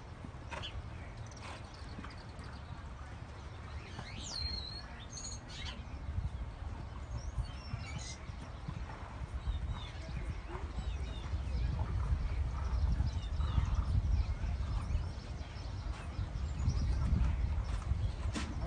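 Hoofbeats of a galloping thoroughbred racehorse on a dirt racetrack, growing louder as the horse approaches and passes. A few birds chirp in the first seconds.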